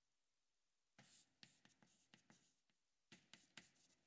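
Very faint chalk on a blackboard: after about a second of near silence, short taps and scratchy strokes come in two brief runs.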